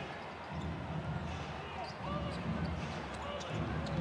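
A basketball being dribbled on a hardwood court during live play, with faint distant shouts from players over a low steady arena rumble.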